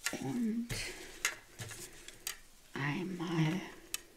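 A few sharp clicks and knocks of a clear plastic set square and a scoring tool on a cutting mat as the cardstock and ruler are shifted. A wordless murmur of a woman's voice comes briefly near the start and again about three seconds in.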